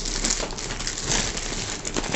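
Plastic mailer packaging crinkling and rustling as it is pulled off a cardboard box.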